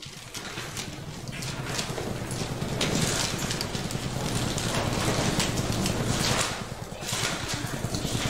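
Thin Bible pages being leafed through and turned close to a pulpit microphone: a continuous papery rustle with many quick flicks.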